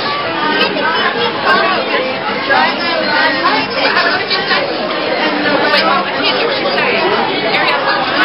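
Crowd chatter: many people, children among them, talking over one another at once, a steady babble with no single voice standing out.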